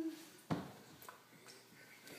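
One sharp knock about half a second in, then a lighter click, while a toddler handles a plastic drinking cup. The tail of a short vocal sound from the child is heard at the very start.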